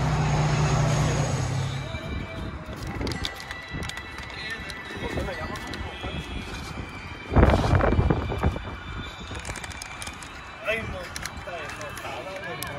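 A Dodge Charger's engine idling with a steady low drone that cuts off abruptly about two seconds in. After that, background music and voices, with one sudden loud burst about seven and a half seconds in.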